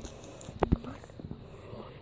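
A few short, sharp knocks over a quiet background, the loudest a close pair about two-thirds of a second in.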